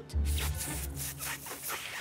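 A failed attempt at a loud fan's whistle: breathy, rasping blowing of air with no clear note, over soft background music.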